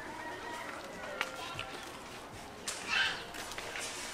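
Quiet outdoor background with a few light ticks, and a short voice sound about three seconds in.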